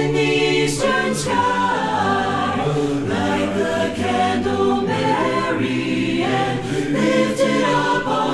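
Mixed SATB choir singing a cappella: sustained, changing chords under a melody line, with the lower voices on 'bum' and 'dmm' syllables like a vocal bass line.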